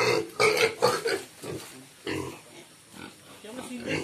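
Pigs squealing as one is held and handled by hand, loudest in about the first second, then quieter.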